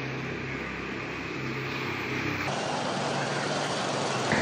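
Street ambience of road traffic: a steady noise of motor vehicles, which changes abruptly about two and a half seconds in as the recording cuts to another spot.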